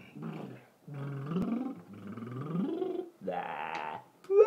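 Wordless human vocalising: low, growly voice sounds whose pitch slides upward twice, then a rougher, noisier sound near the end.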